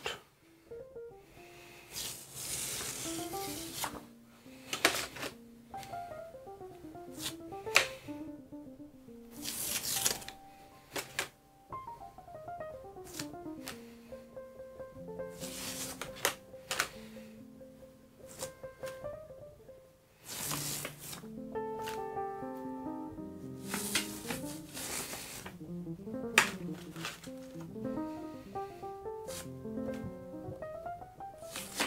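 Soft background music with a gentle stepping melody, over which thin plastic stencils rustle and crinkle in short bursts as they are peeled off a gel printing plate and handled.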